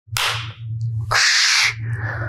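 Two short swishing whooshes, the second louder and longer, over a steady low hum.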